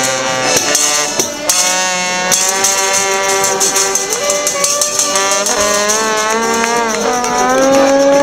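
Traditional Marche folk street band playing: accordion, trombone and saxophone carry held, sometimes sliding melody notes over a steady beat of tambourine jingles and strikes on a small cymbal.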